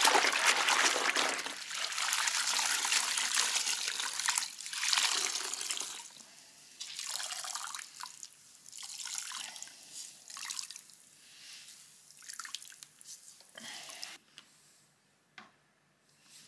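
Hands scrubbing and sloshing a wash sponge in a bucket of soapy water, steadily for the first few seconds, then squeezing it out so water splashes and trickles back into the bucket in separate bursts that die away near the end.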